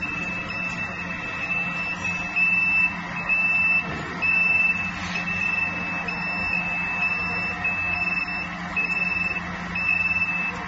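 An electronic buzzer beeps on one high pitch, about three beeps every two seconds, over the steady hum of an industrial conveyor washing and drying machine.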